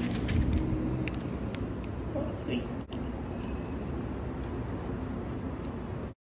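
A foil-lined bagel wrapper crinkling with scattered light clicks as the bagel is handled and torn, over a steady low rumble.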